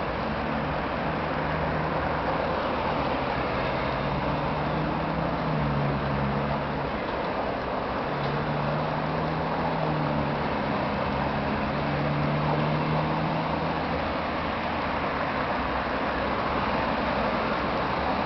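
Steady traffic noise on a wide city avenue, with a low engine hum that comes and goes through roughly the first three-quarters.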